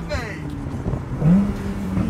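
Porsche 911 Carrera S flat-six (boxer) engine heard from inside the cabin, pulling under acceleration. Its note climbs sharply about a second in, then holds at the higher pitch.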